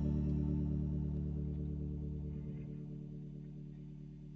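The final chord of a blues-rock band ringing out, led by an electric guitar through chorus and distortion effects, held with no new notes and fading steadily.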